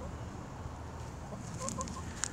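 Domestic hens clucking softly: a few short, quiet clucks scattered through the moment.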